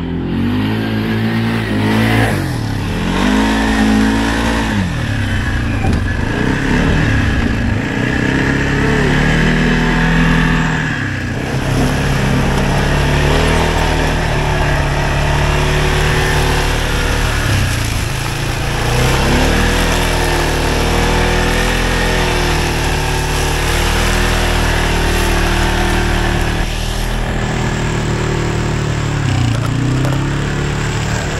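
Arctic Cat 700 ATV engine revving up and down over and over as the quad is ridden through mud, its pitch climbing and dropping every few seconds.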